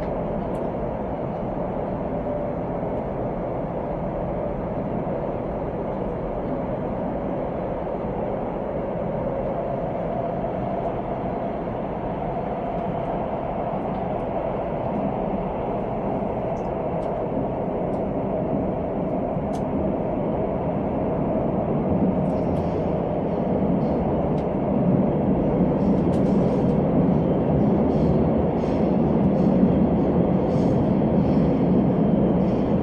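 Cabin noise of a Korail Nuriro electric multiple unit running along the line: a steady rumble and hum from the wheels and running gear. It grows louder over the last several seconds, with light clicks and rattles coming more often.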